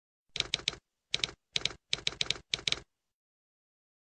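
Typewriter keystroke sound effect: about fourteen sharp key strikes in five quick clusters over some two and a half seconds, accompanying a title logo typing onto the screen.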